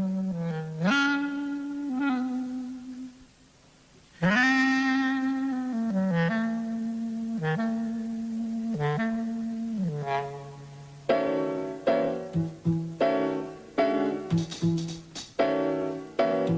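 Jazz clarinet playing a slow melody of long held notes in its low register, scooping up into some of them, with a brief pause about three seconds in. From about eleven seconds, piano chords are struck over and over, about one or two a second.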